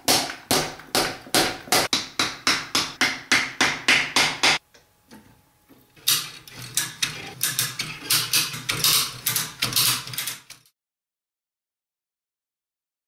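Repeated hammer blows on an Audi 016 transmission case, about three a second, to break the gear carrier assembly loose while a chain holds it under upward tension. A run of strikes, a pause of about a second and a half, then a second run that stops about ten and a half seconds in.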